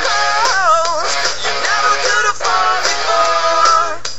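Pop-rock song playing loudly, led by a pitch-corrected singing voice over a band, its held notes bending and wavering.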